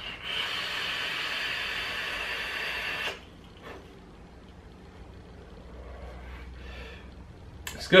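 A vape draw: the coil sizzles with the hiss of air pulled through the atomiser for about three seconds, then stops. A softer breathy exhale of the vapour follows.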